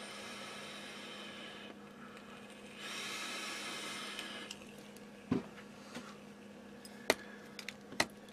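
Two long hissing draws on an electronic cigarette, air and vapour pulled through the atomiser; the first ends about two seconds in, the second runs from about three to four and a half seconds. A steady low hum runs underneath, and a few light knocks come in the second half.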